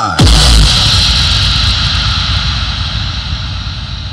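Electronic dance music played loud through a MaxiAxi Bass Punch PA speaker: a heavy bass hit just after the start, then a long hissing wash that fades steadily.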